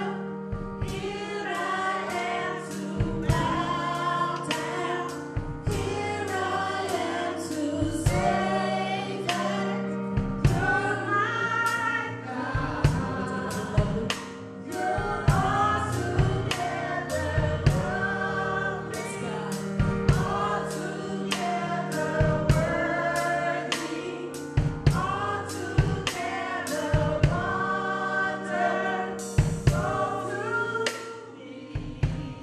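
A woman singing a gospel praise song into a microphone, over instrumental accompaniment with sustained low notes and a steady beat of sharp percussive hits.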